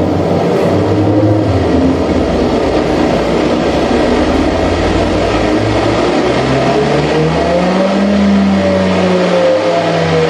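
Live modular-synthesizer electronics: a loud, dense noisy texture over low droning tones. In the second half a low tone glides up, holds, then bends back down, while a higher tone slowly falls near the end.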